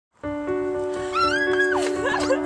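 Music with sustained held notes starts just after the opening. About a second in, a single high cry rises, holds and falls away over most of a second.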